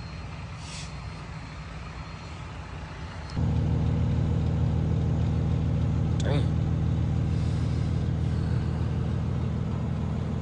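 Semi-truck diesel engine idling steadily, heard from the cab; the hum jumps sharply louder about three and a half seconds in and stays there.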